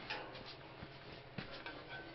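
A few faint, scattered clicks and light taps over a faint steady low hum, with no speech.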